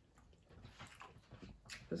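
Faint eating sounds: soft, irregular wet clicks as shrimp are dipped into a bowl of seafood sauce and eaten.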